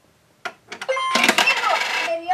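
A coin clinks as it drops into the slot of a toy Anpanman crane game, followed by a few small clicks. About a second in, the toy's small speaker starts its start-up sound, a loud recorded voice with music, as the game switches on.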